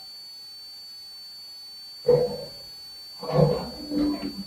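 Red plastic table's legs scraping on a concrete floor as it is pushed, in two short scrapes about two seconds and three and a half seconds in.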